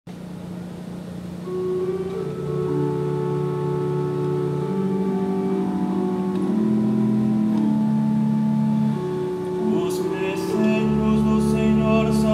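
Pipe organ playing a slow introduction of sustained, changing chords for a responsorial psalm. A low pedal note comes in near the end, and a voice begins singing over it.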